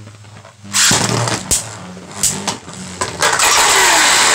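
Beyblade Burst spinning tops in a plastic stadium: sharp clattering knocks from about a second in, then from about three seconds in a loud steady whirring rattle. This is a top spinning against the plastic in the stadium's pocket: Bushin Ashura has knocked itself out.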